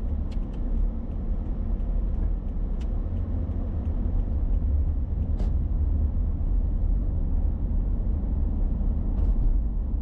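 Car driving, heard from inside the cabin through a dashboard camera: a steady low rumble of engine and road noise, with a few faint clicks.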